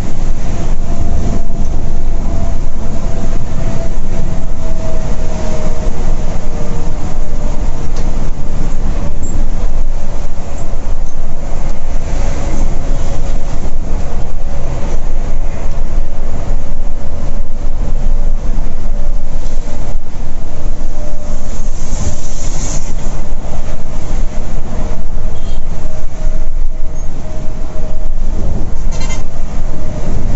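Volvo B11R sleeper coach cruising at highway speed, heard from the front cabin: a loud, dense rumble of road and engine noise with a faint steady whine that drifts slowly in pitch.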